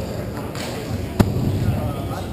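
Hockey warm-up: players' background chatter and scattered stick-and-ball knocks, with one sharp crack about a second in, the loudest sound.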